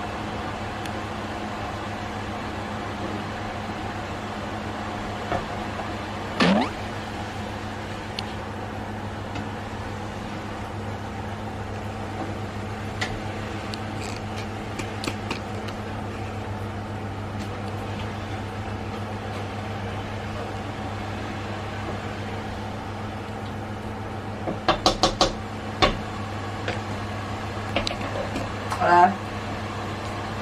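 Steady low electric hum and fan whir from a glass-top electric hob heating a pot of soup. Near the end come a few quick knocks of a utensil against the metal pot as it is stirred.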